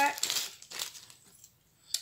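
Small clear plastic bag crinkling in a few short rustles as it is handled and opened, the sound fading in the second half.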